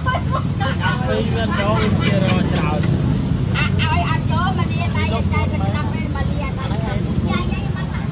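People talking in the background, voices running on through the whole stretch, over a steady low rumble.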